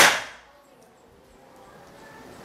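The report of a PCP bullpup air rifle, an FX Impact MK2 type, dying away within about half a second after a single shot. It is the first shot of a power test, clocked at 929 fps.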